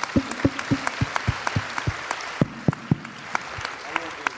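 Audience applauding, many hands clapping with a few sharp, close claps standing out; the clapping thins a little after the midpoint.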